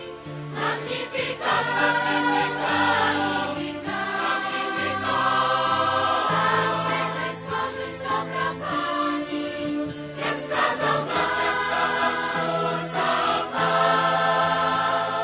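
Background music: a choir singing slow, held chords of sacred music.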